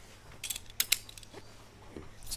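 Safety harness buckles and strap fittings clicking as a climbing-style harness is fastened on, a few sharp clicks about half a second to a second in.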